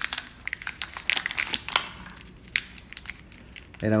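A small packaging pouch crinkling and tearing as it is ripped open by hand: a quick run of sharp crackles that thins out in the second half.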